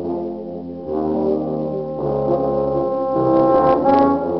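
A tuba and euphonium ensemble playing together: low brass holding chords, with notes changing every half second or so and a brief break just before one second in.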